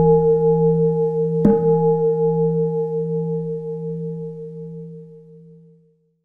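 A bowl-shaped metal bell ringing with a low, wavering hum, struck again about a second and a half in, its ring fading out near the end.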